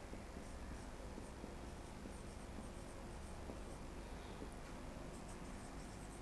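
Marker pen writing on a whiteboard: faint scratching strokes over a low, steady room hum.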